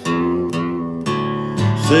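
Guitar chords strummed in a country song, two strums about a second apart, and a man's singing voice comes in near the end.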